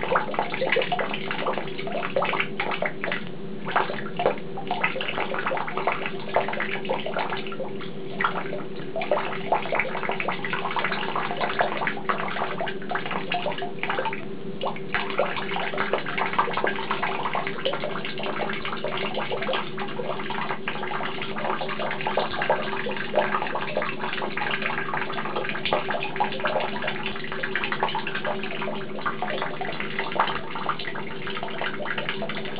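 Tap water pouring in a steady stream into a plastic bucket partly full of water, splashing continuously with frequent small irregular splashes and a steady low tone underneath.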